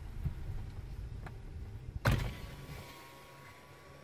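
Low steady rumble, then about halfway through a car's electric side window is switched on: a sudden thump as the motor starts, followed by a steady whine while the glass lowers.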